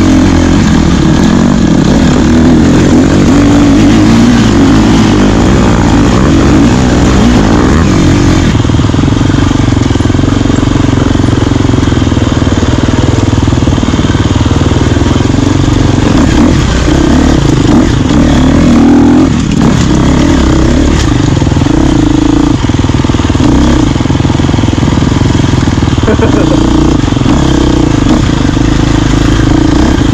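Enduro dirt bike engine running loud, its note rising and falling with the throttle as it is ridden off-road.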